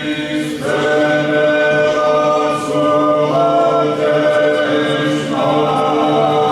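Men's voices singing an Orthodox liturgical chant a cappella, in several parts. The low voices hold steady notes while the upper voices move to a new pitch every couple of seconds.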